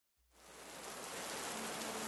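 A moment of dead silence, then a recorded rain sound fading in and growing steadily, with a faint low held note entering about halfway through.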